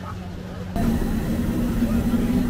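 Street-stall kitchen noise: a steady low machine hum that switches abruptly about a second in to a louder, higher hum with the hiss of oil deep-frying in iron kadais.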